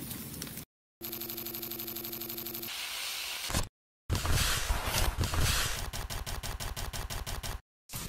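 A string of short edited sound effects, each cut off abruptly by a brief silence: first a pulsing, buzzing tone, then a noisy rush, then a loud burst that turns into a run of rapid clicks growing faster.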